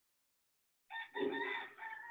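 A rooster crowing once, starting about a second in and lasting about a second and a half in a few joined parts.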